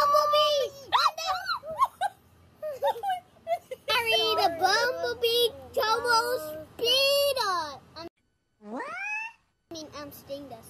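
Children's high-pitched voices exclaiming and vocalizing excitedly in short bursts, with no clear words, broken by a brief silent gap near the end.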